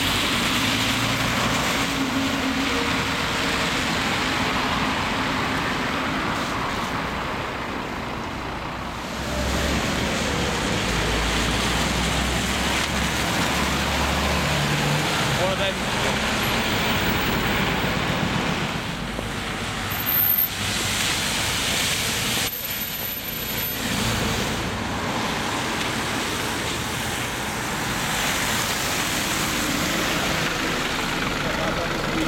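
City street traffic with diesel buses going by: a double-decker bus passes, then single-deck buses, with a deep engine rumble strongest in the middle and steady tyre noise on a wet road.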